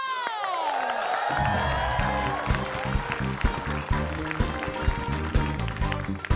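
A woman's very high, loud held vocal note that slides down in pitch and dies away in the first second or so. About a second in, band music with a bass line and a steady beat takes over.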